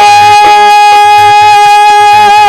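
Live qawwali music: one long held high note carries through, over a steady hand-drum beat.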